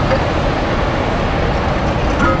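Loud, steady background din of a busy arcade, with many game machines and people blending into an even wash of noise.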